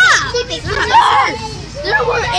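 Children's voices laughing and exclaiming excitedly, with no clear words.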